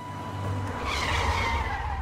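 Produced transition sound effect: a deep rumble builds, and a noisy swoosh that falls in pitch peaks a little after a second in.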